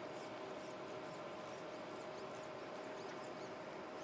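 Quiet room tone: a steady hiss with a faint steady hum, and faint high chirps a few times a second.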